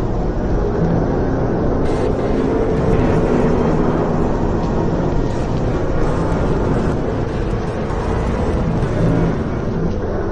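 Dense, steady rumbling noise drone of a dark ambient soundscape track, loud, with no beat or melody. A brighter hiss layer joins about two seconds in.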